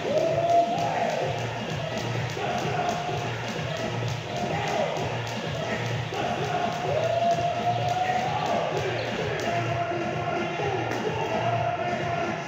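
Background music with a voice over it, and under it the quick, regular slaps of a jump rope hitting a rubber gym floor; the rope slaps stop about ten seconds in.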